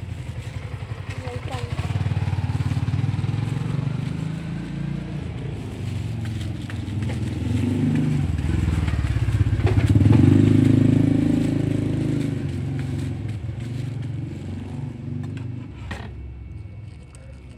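A motorcycle engine running close by, growing louder to a peak about ten seconds in and then fading away.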